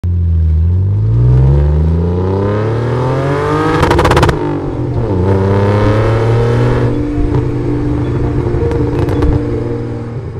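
Car engine revving, rising steadily in pitch for about four seconds, with a short crackle as the pitch drops, then running at a steady pitch.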